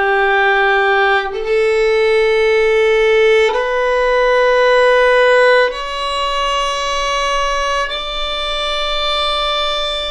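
Solo violin playing the D major scale in slow half notes, two beats per bow, one note to each bow stroke. It climbs step by step through the upper notes of the scale, G, A, B and C sharp, to the top D, each note held about two seconds.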